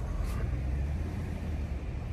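Low, steady rumble of a car's engine and road noise heard from inside the cabin.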